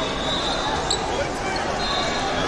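Busy wrestling-hall ambience: crowd chatter and thuds from the mats, with a sharp click about a second in and a high steady tone starting near the end.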